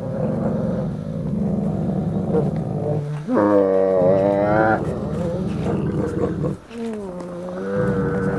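Gray wolves in a dominance pin: a low, continuous growl, broken about three seconds in by a loud, drawn-out whining cry lasting about a second and a half. Growling follows, and a second, lower whine begins near the end, the sound of the pinned wolf submitting.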